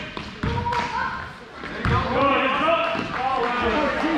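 Basketball bouncing on a hardwood gym floor, with two low thuds about half a second and two seconds in, amid the voices of players and spectators.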